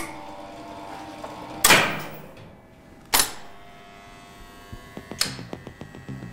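Relays and contactors in a 1959 ASEA traction elevator's controller clacking: three loud, sharp clacks about a second and a half apart, over a faint steady hum.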